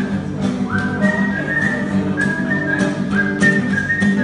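A person whistling a melody over a strummed acoustic guitar, some whistled notes sliding up into pitch, about a second in and again past three seconds.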